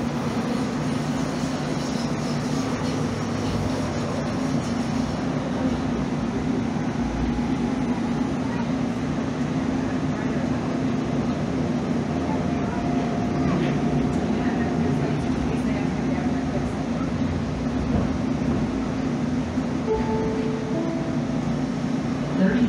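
Calgary CTrain light-rail train running along the track, heard from inside the car: a steady rumble with a constant low hum from the running gear and motors.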